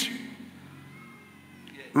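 A short pause in a man's amplified sermon: his last word trails off with hall reverberation into quiet room noise, with a faint thin tone near the middle, and his voice comes back right at the end.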